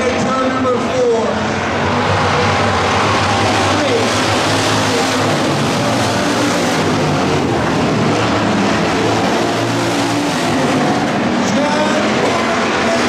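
A pack of hobby stock race cars running at race speed on a dirt oval, their engines blending into a loud, steady drone.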